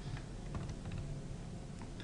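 A few faint, scattered clicks of computer keys, over a steady low hum.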